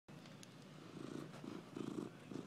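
A domestic cat purring, faint and rhythmic, growing a little louder after about a second.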